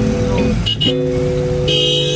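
Vehicle horns honking in heavy traffic: several long blasts of different pitches, one after another, over steady traffic noise.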